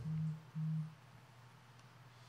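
Two brief, steady low tones at the same pitch, each about a third of a second long, in the first second, then near silence.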